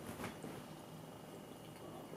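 Faint sips and swallows of a drink from an aluminium can, over quiet room tone.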